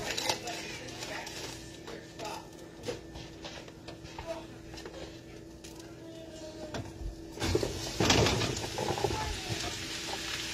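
Handling and rustling of a plastic-wrapped mushroom package, then sliced cremini mushrooms tipped into a skillet of hot oil, sizzling loudly from about seven and a half seconds in.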